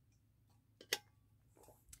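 Drinking tumbler being handled while she drinks: a faint, short sharp click about a second in, otherwise near silence.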